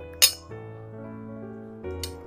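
Background music runs throughout, and about a quarter second in there is a single sharp clink of tableware against a ceramic plate as a bowl of glass noodles is tipped onto it.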